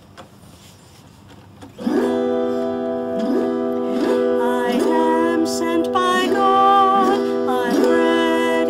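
Autoharp strummed in a steady rhythm of chords, starting about two seconds in after a short hush. A woman's singing voice joins over the strumming near the end.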